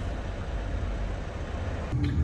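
Steady low outdoor background rumble with no distinct events.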